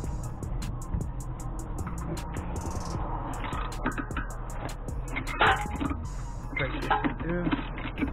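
Socket ratchet clicking in quick repeated strokes as a suspension bolt is worked loose, the clicks thinning out about halfway through. Background music with voices runs underneath.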